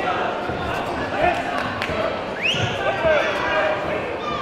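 Echoing sports-hall bustle around a kickboxing bout: overlapping shouting voices, with a few short knocks and a brief rising squeak about two and a half seconds in.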